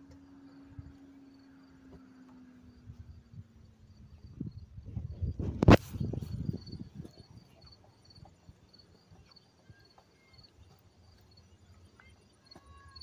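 Rubber boots stepping along a weathered wooden plank: a run of dull thumps around the middle with one sharp knock, the loudest sound. Under it, a faint high chirp repeats a few times a second, and a low hum sags slightly in pitch and fades over the first few seconds.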